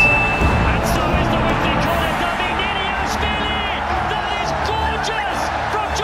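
Background music playing under a man's voice and match sound, with a brief high steady tone at the start.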